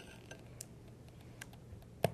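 A few faint, scattered clicks and ticks as the lid of a small honey jar is twisted open by hand.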